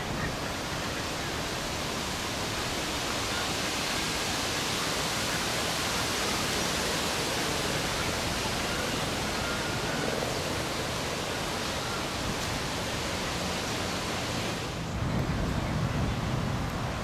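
Steady rushing noise, even and without pattern. Near the end the hiss drops away and a lower rumble takes over.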